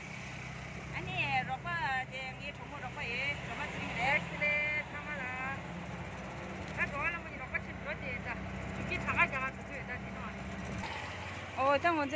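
Low steady hum of a moving vehicle heard from inside a canopied rickshaw, with women's voices over it; the hum cuts off abruptly about eleven seconds in.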